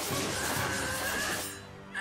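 Anime episode soundtrack playing: background music with a held high tone through the middle, dropping away about one and a half seconds in.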